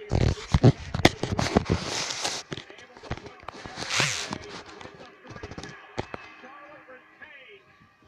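Handling noise from a camera being moved about close to its microphone: a run of clicks, knocks and rustling over the first few seconds and another rustling burst about four seconds in.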